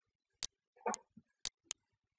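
Computer mouse clicks: single sharp clicks about a second apart, with two close together near the end. A short muffled noise comes about a second in.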